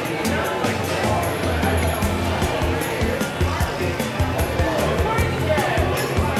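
Background music with a steady beat and bass line, over the chatter of a crowd.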